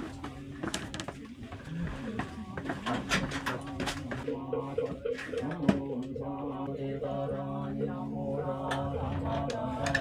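A man's voice chanting in long, held, droning lines, typical of Buddhist chanting at a temple. It settles into a steady drone from about halfway, after a few clicks and knocks in the first seconds.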